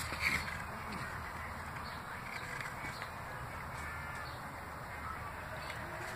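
Faint bird calls over steady low background noise.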